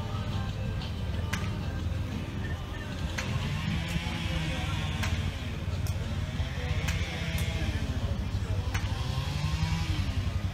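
Busy outdoor show ambience: a steady low rumble like an engine running, mixed with background music and voices, and a few scattered clicks.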